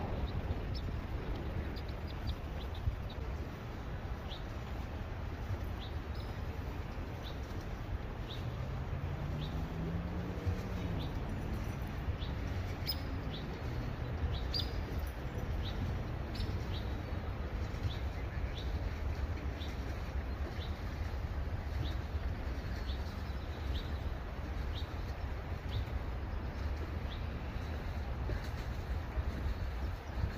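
A small bird chirping a single short high note over and over, about one to two times a second, over a steady low rumble.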